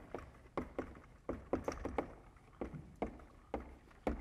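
Chalk writing on a blackboard: a string of short, irregular taps and scratches as the stick strikes and drags across the board.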